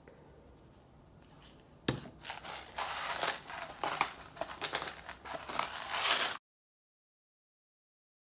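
A knock about two seconds in, then a hand-twisted pepper grinder crunching peppercorns in a dense run of gritty clicks, which cuts off suddenly.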